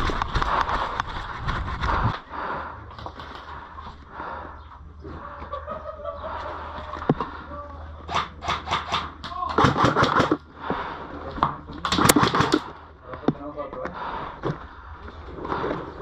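Airsoft game sounds: players' voices, none clear enough to make out, with clusters of sharp clicks from airsoft gun shots and BB hits between about eight and thirteen seconds in.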